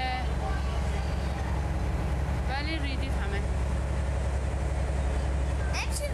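Steady low rumble of a moving vehicle heard from inside it, through a phone's live-stream audio. A girl speaks briefly over it about halfway through and again near the end.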